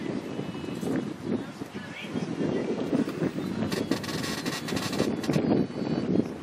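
Indistinct voices over outdoor background noise, with a burst of hiss from about four to five and a half seconds in.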